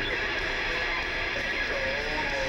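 Heavy metal band playing live, led by a distorted electric guitar whose notes bend and slide in pitch.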